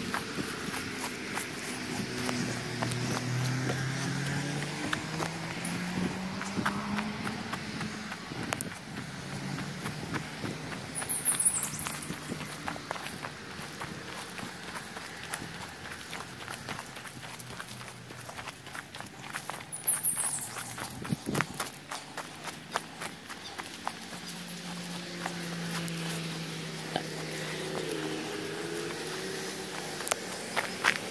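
Footsteps of a person walking outdoors. A low hum wavers in pitch during the first several seconds and again near the end, and two brief high chirps come through in the middle.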